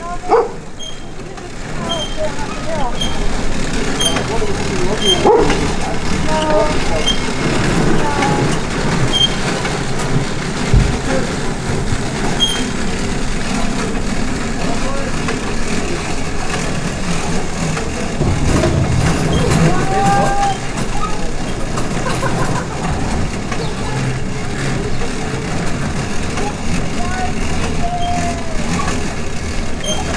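Indistinct voices of people talking over steady outdoor background noise, with a faint high chirp repeating every half second to a second for the first dozen seconds or so.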